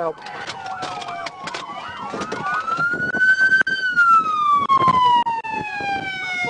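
Police car siren wailing. Several gliding siren tones overlap in the first two seconds, then one long wail rises to a peak near the middle and slowly falls, with repeated sharp clicks and knocks over it.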